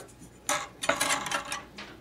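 A ruler clattering and scraping as it is laid down on a wooden board against taut copper wires, a run of light clinks starting about half a second in.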